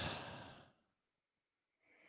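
A short breathy exhale from a man at a close microphone, fading out about half a second in, followed by dead silence.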